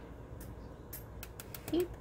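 A handful of light, sharp clicks of small glass seed beads being strung onto aluminium wire, knocking against the wire and each other, mostly in the second half.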